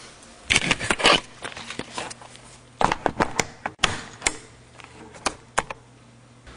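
Camera being handled and fitted onto a tripod: a series of irregular clicks and knocks, some in quick pairs, picked up as handling noise on the camera's own microphone.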